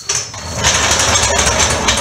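Steel floor jack rolling across a concrete floor, a steady rolling noise with rattle that starts just after the beginning and keeps going.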